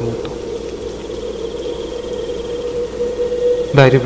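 Sound-effect night ambience: a steady low hum with a faint, high insect chirring over a soft hiss.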